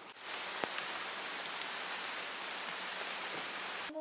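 Steady rain falling on jungle foliage, an even hiss with a few sharper drops, starting suddenly just after the start and cutting off abruptly near the end.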